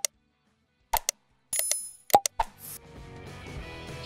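Clicking and popping sound effects, about five short pops spread over the first two and a half seconds, with a brief bright bell-like chime about a second and a half in; faint background music then comes in.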